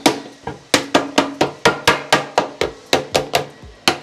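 Lead dresser beating a sheet of lead against a timber edge: a fast, even run of dull knocks, about five a second, with a short break near the end. The lead is being dressed flat around a folded corner (a pig's ear) in the flashing.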